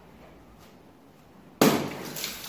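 A water balloon bursts sharply over a person's head about one and a half seconds in, followed by the splash of water pouring down.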